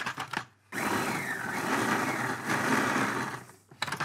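Tefal food processor run in one pulse of about three seconds, its blade mixing crumbly biscuit dough with a little water. It starts a little under a second in and cuts off shortly before the end.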